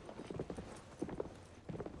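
Footsteps of a small group walking on stone paving: a quick, uneven patter of hard heel taps from several walkers at once.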